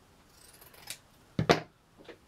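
Scissors snipping through burlap ribbon with a short, faint rasp, then two sharp knocks about a second and a half in, the loudest sound, as the scissors are put down on the table.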